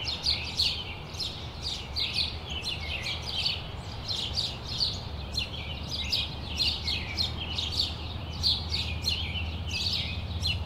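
A group of finches chirping and twittering, with short down-slurred calls overlapping several times a second, over a steady low hum.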